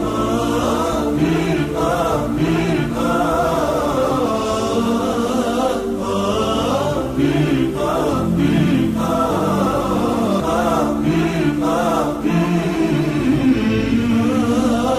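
Background music: a chanted vocal piece, several voices singing a wavering, ornamented melody over held low notes that shift every few seconds.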